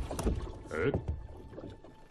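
Wooden creaks and knocks of a small rowboat and its upright wooden ladder, with a short mumbled voice about a second in.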